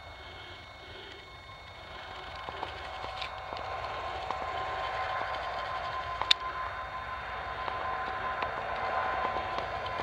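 EWS diesel locomotive hauling a train as it approaches and passes, growing steadily louder, with a steady tone running through it. A single sharp click about six seconds in.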